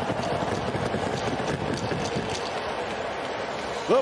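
Steady hockey-arena crowd noise following a goal, with scattered faint clicks and scrapes from the ice.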